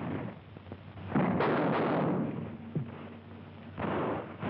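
Battle gunfire on an old film soundtrack: a loud shot or blast about a second in that rings on for about a second, a sharp crack near three seconds, and another shot near the end.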